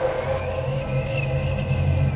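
Low, steady rumbling drone of dark ambient sound design, with a faint thin high tone coming in about half a second in.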